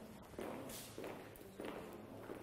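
High-heeled shoes stepping on a tiled floor as a line of women walk, giving three faint, evenly spaced heel strikes.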